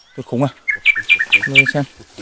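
A run of about five quick, high chirps, roughly four a second, each dropping in pitch, from an animal, with a man's short exclamations before and under them.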